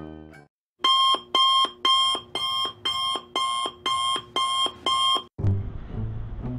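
Smartphone alarm ringing: a repeating electronic beep, about two a second, that stops about five seconds in.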